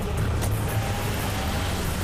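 Car engine running with a steady low rumble, and a single sharp click about half a second in.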